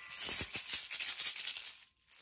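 Hand shakers shaken for nearly two seconds, a fast, bright rattle that stops just before the end. They stand in for the word "seeds" in a story read aloud.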